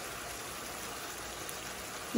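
Pieces of marinated boneless chicken frying in oil and tomato-spice sauce in a pan, a steady sizzle.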